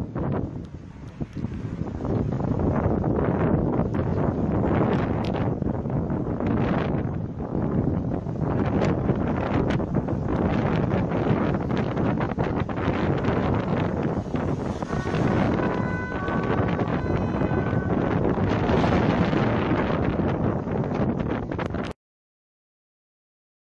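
Heavy wind buffeting on a phone microphone filmed from a moving vehicle, mixed with road noise. A few short steady beeps sound about three quarters of the way through.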